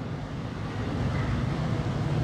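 Steady background hiss and low rumble with no speech: the room tone of a hall picked up through the microphones.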